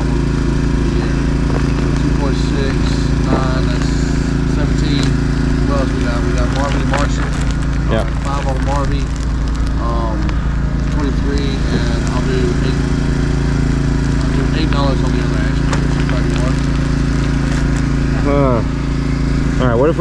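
A steady low engine drone running without change, with faint voices of people talking in the background.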